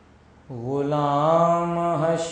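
A man's solo voice reciting a naat, with no instruments. After a short pause he starts a new phrase about half a second in and holds one long note.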